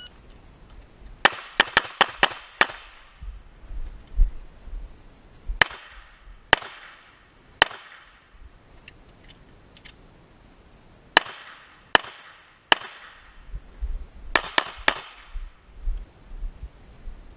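Glock 19 9 mm pistol fired in four quick strings, about fifteen shots in all. A fast string of six comes first, then three strings of three, each shot sharp with a short echo trailing off.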